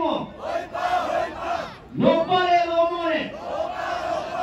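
A group of voices giving a long, drawn-out chanted shout, twice. The first falls away right at the start. The second rises about two seconds in, holds for about a second, then falls off.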